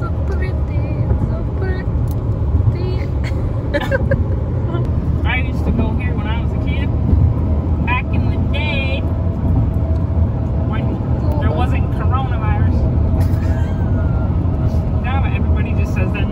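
Steady low rumble of road and wind noise inside the cabin of a moving car, with voices heard indistinctly now and then.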